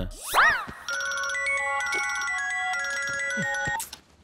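Mobile phone ringtone: a melody of steady, clean electronic notes that starts about a second in and cuts off just before the end. Just before it, a short swooping sound rises and then falls in pitch.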